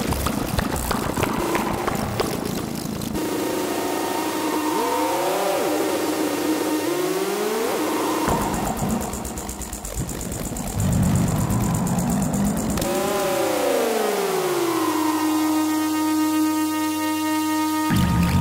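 A patched set of analog synthesizers (Behringer 2600, Behringer Pro-1 and Studio Electronics Boomstar) sounding electronic tones while the Pro-1's knobs are turned. A noisy texture gives way to tones that swoop up and down in pitch, then switches abruptly to a high hiss. Near the end a downward glide settles into one steady held tone.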